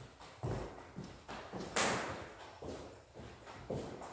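Footsteps in sneakers on a hardwood floor, a knock about every half second, with one brighter, sharper clatter about two seconds in.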